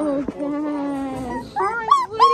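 A young puppy whining: one long, slowly falling whine of about a second, then short rising cries near the end. The puppy is injured and unable to walk.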